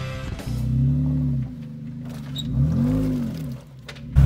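Jeep Wrangler engine revved twice under load as it crawls over a stump in mud, each rev rising and falling in pitch over about a second.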